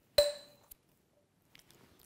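A single sharp tap with a brief ringing tone about a quarter second in, then a faint tick.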